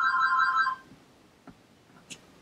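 A steady electronic ringing tone of several pitches, like a phone ringtone, that stops abruptly about a second in. Then near silence with one faint click.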